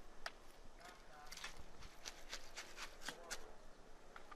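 Faint, irregular clicks and taps, a dozen or so spread through the few seconds, over a quiet outdoor background.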